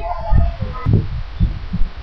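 Irregular low thumps and rumble, several a second, in a short pause between spoken sentences, with a brief faint vocal sound about a second in.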